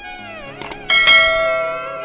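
Devotional background music with a bright bell strike about a second in that rings and slowly fades. Two quick clicks come just before the strike.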